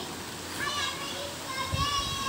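A young boy singing in a high voice, in two short phrases with held notes that bend in pitch, the second starting about one and a half seconds in.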